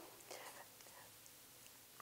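Near silence: room tone, with a faint soft sound about half a second in.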